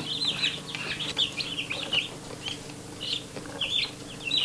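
A brooder full of baby chicks peeping: a scatter of short, high chirps, several a second, some overlapping.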